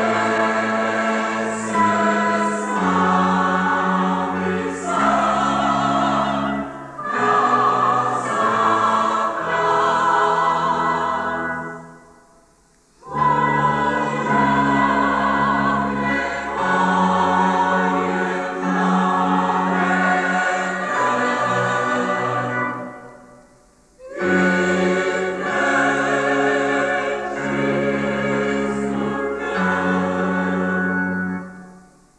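Large mixed choir of men's and women's voices singing a hymn with keyboard accompaniment, in long phrases broken by two short pauses, about twelve and twenty-three seconds in.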